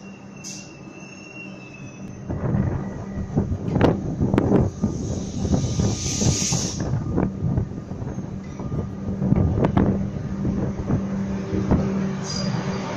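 Comeng electric suburban train departing, with a steady motor hum; about two seconds in it grows louder, the wheels rumbling and knocking over rail joints as the carriages pass. A brief hiss sounds about halfway through.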